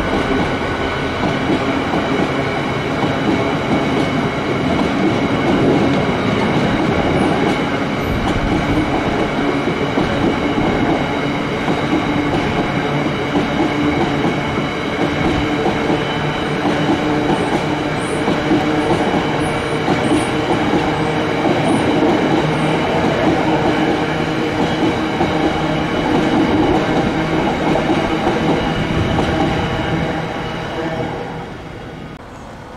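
A freight train of open box wagons rolling past close by, with a steady rumble and clatter of wheels on the rails and several high ringing tones. The sound falls away at the very end as the tail of the train goes by.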